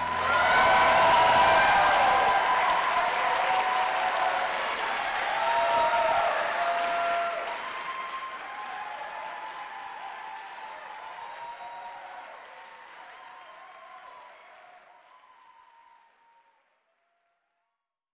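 Audience applauding at the end of a sung performance with piano, with a few voices calling out among the clapping. The applause fades away and stops about sixteen seconds in.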